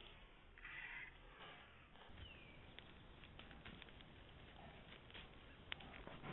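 Faint rustling with scattered light clicks from a black bear moving close past a trail camera, picked up dull and thin by the camera's small microphone.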